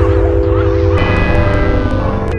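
PPG WaveMapper wavetable synthesizer on iPad playing a held chord of steady sustained tones over a low, rapidly pulsing sequenced bass. The upper tones brighten about a second in.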